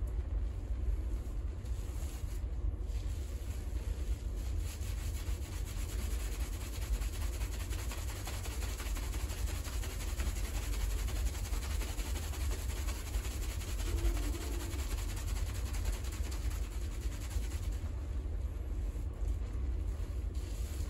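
A hairdresser's fingers vigorously scrubbing a heavily lathered scalp and hair: a continuous wet rubbing of shampoo foam over a steady low rumble.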